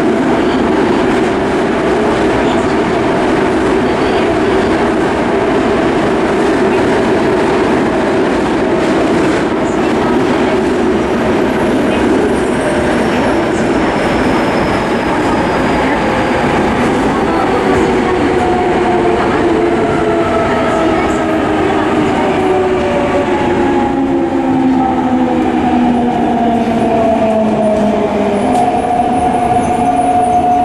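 Yokohama Municipal Subway 3000A-series train heard from inside the car, running with a steady rumble and motor hum. From about two-thirds of the way through, the Mitsubishi GTO-VVVF inverter and traction motor tones fall steadily in pitch as the train slows.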